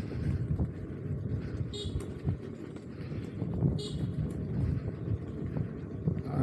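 Steady low rumble of an electric unicycle ride on a gravel path beside a highway, mixed with road traffic. Two brief high-pitched chirps come about two and four seconds in.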